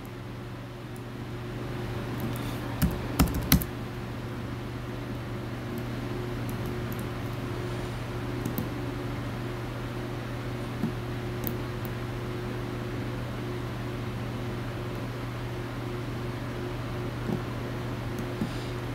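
Computer keyboard and mouse clicks: a quick cluster of sharp clicks about three seconds in, then a few scattered single clicks, over a steady low hum.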